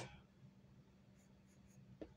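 Faint pencil strokes scratching on drawing paper: a few light, short strokes while sketching a figure.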